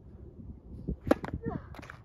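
A tennis racket striking a tennis ball once, a sharp crack about a second in and the loudest sound here, just after a lower thump of the ball bouncing on the hard court.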